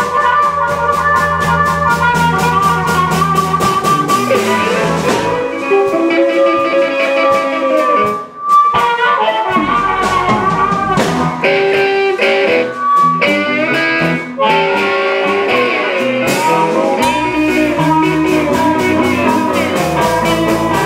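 Live blues band: resonator guitar and amplified harmonica over a drum kit, with pitch bends in the lead lines. The band stops briefly about eight seconds in, then carries on.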